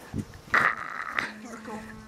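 Young people's voices shouting and chanting, with a loud yell about half a second in and a drawn-out held call in the second half; a low thump comes just after the start.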